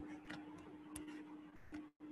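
Faint irregular clicks of a stylus tapping on a drawing tablet while lines are drawn, over a steady faint hum.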